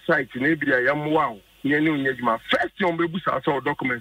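Speech only: a person talking steadily in a radio broadcast, with no other sound standing out.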